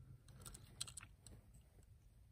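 Near silence with a few faint, small clicks as fingers turn over a diecast toy car with a metal body and plastic base.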